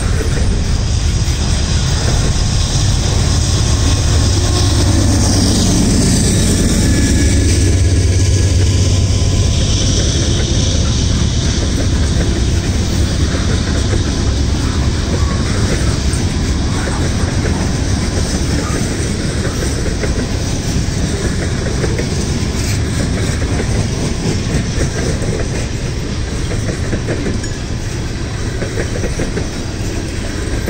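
Freight train rolling past at close range: a steady rumble of steel wheels on rail with clickety-clack over the joints. A mid-train diesel locomotive (distributed power unit) goes by in the first third, adding a louder low engine drone that peaks about eight seconds in, before the tank cars roll on.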